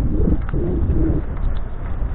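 Steady low wind and ride rumble on a camera riding along a road, with a low cooing bird call, like a pigeon's, in the first second.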